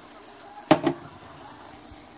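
Dumpling filling cooking in a stovetop pan with a faint steady sizzle. A metal fork clinks once against the pan about two-thirds of a second in, followed by a short vocal sound.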